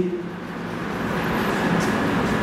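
Steady background hum and hiss of room noise, with faint scratches of a marker writing on a whiteboard near the end.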